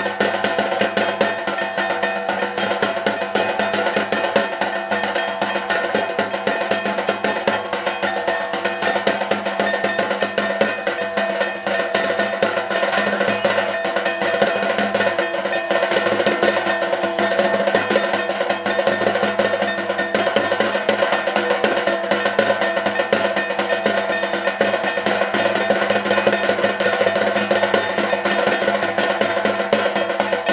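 Fast, continuous drumming in a rolling rhythm, with steady held tones beneath it, played as dance music.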